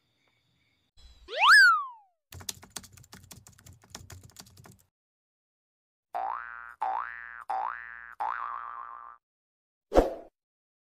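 Sound effects of an animated intro: a loud boing-like glide that sweeps up and falls back about a second in, then a patter of keyboard-typing clicks for about two and a half seconds. About six seconds in come four rising swoop tones, one after another, and a short thump near the end.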